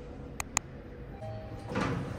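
Lift car running with a steady low hum. Two sharp clicks come about half a second in, a faint short tone follows, and near the end the lift doors slide open with a brief rush of noise.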